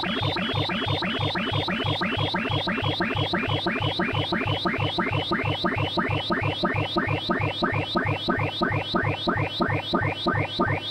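Computer-generated tones of a sorting-algorithm animation running bubble sort, each comparison a short blip pitched by the height of a bar. The blips run together into rising sweeps that repeat about three to four times a second, one for each pass, coming slightly faster toward the end.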